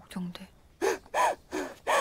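A young woman crying, with three short gasping sobs that rise and fall in pitch in the second half.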